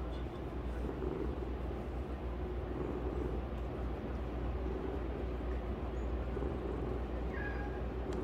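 Domestic cat purring steadily while being stroked by hand.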